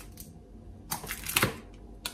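A wrapped block of butter being handled and set down on a glass-topped digital kitchen scale for weighing: a short cluster of clicks and wrapper rustle about a second in, after a quiet start.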